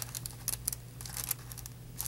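Crinkle-cut paper shred and the box rustling and crackling as the open box is handled, with a cluster of short crackles in the first half and fainter ones after.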